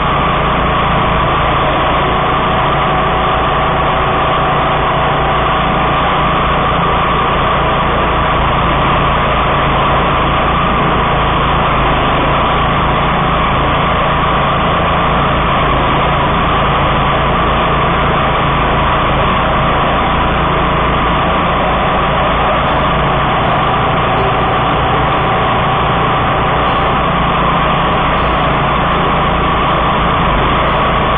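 DR walk-behind field and brush mower's engine running steadily at working speed, heard close up from the machine itself.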